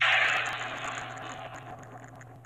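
A cartoon sound effect: a sudden loud noisy rush with a high ringing tone above it, fading away over about two seconds.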